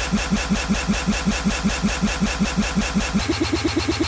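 A very short slice of an electronic music track looped in a DJ app, stuttering at about eight repeats a second. A bit past three seconds in, the pitch and tempo are pushed up, and the loop jumps higher and repeats faster.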